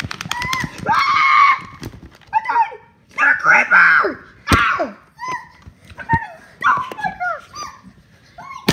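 Very high-pitched cartoonish character voices yelling and shrieking in short bursts, with a few sharp knocks mixed in.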